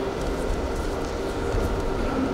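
Steady low rumble and hum of an indoor wrestling hall, with faint scuffs and taps from the wrestlers grappling on the mat.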